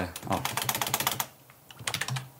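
Typing on a computer keyboard: a quick run of key clicks that pauses for about half a second, then starts again near the end.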